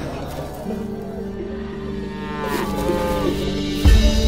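Background soundtrack music with sustained low held notes and a gliding, bending tone in the middle, ending in a deep boom near the end.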